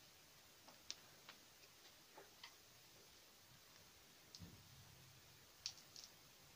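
Near silence with a few faint, irregular clicks and ticks from hands working cold plasticine on a wire armature figure.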